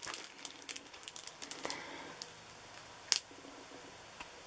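Faint crinkling of the clear plastic cover on a diamond-painting canvas as it is handled, with scattered light ticks and one sharper click about three seconds in.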